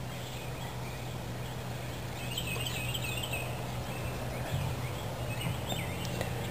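Outdoor ambience: a steady background hiss and low hum, with faint bird chirps a little after two seconds in and again near the end.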